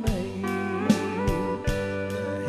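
Live country-gospel band playing, with a pedal steel guitar leading in gliding, bending notes over bass guitar and drums that strike steadily.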